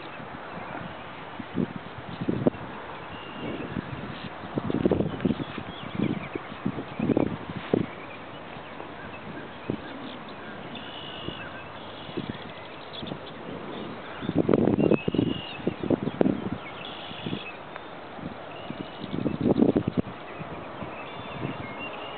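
Irregular low, muffled thumps and rumbles on the microphone, typical of wind gusts or handling, over a steady outdoor hiss. The longest comes about two-thirds of the way through. A few faint, short, high bird calls are heard now and then.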